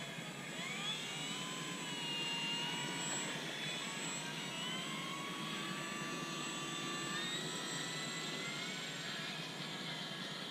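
Electric RC model F4U Corsair's Cobra C-2820/12 brushless motor and propeller throttling up for takeoff. The whine rises sharply in pitch about a second in, then holds and climbs slowly as the plane rolls out and flies away.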